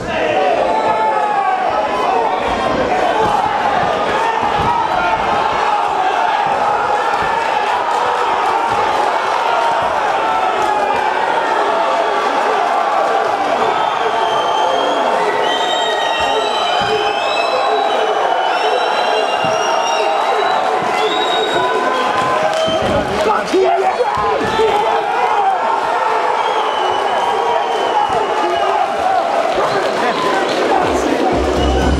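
Fight crowd shouting and cheering, many voices overlapping, loud and steady, with shrill high-pitched cries through the middle and a single thud about two-thirds of the way in.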